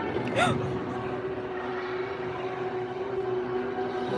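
Busy gymnasium sound: crowd chatter over steady background music, with a short loud cry about half a second in.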